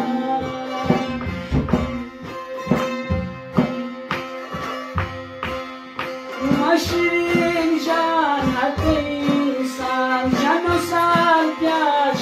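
Chitrali sitar, a long-necked plucked lute, playing a Khowar folk melody over a steady beat of low thumps. About six seconds in, a man's voice comes in singing a ghazal with the instrument.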